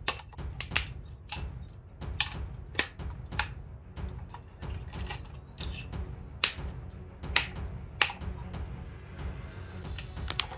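Flush cutters snipping plastic zip ties and wire, a string of sharp snips and clicks at irregular intervals, over background music.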